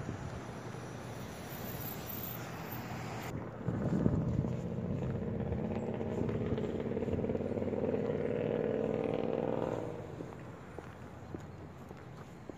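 Outdoor street noise, then a motor vehicle drives by close. Its engine comes in about four seconds in with a slowly rising hum and fades away near the ten-second mark.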